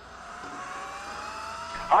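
A produced sound-effect sweep swelling in, its tones gliding slowly upward in pitch as it grows louder, leading into a radio station ID.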